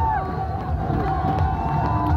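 An audience cheering and shouting, with music playing underneath.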